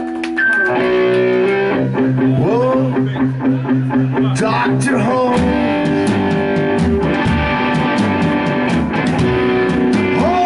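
Live band playing: a hollow-body electric guitar leads over an upright bass and a drum kit.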